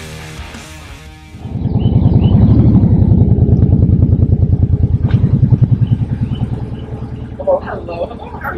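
Motorcycle engine running with a loud, rapid low pulse as the bike pulls forward at low speed, starting about a second and a half in and easing off near the end.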